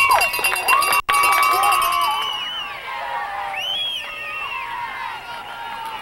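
Sideline crowd at a youth football game shouting and cheering, many high voices at once, loudest in the first two seconds and then dying down, with a brief dropout about a second in.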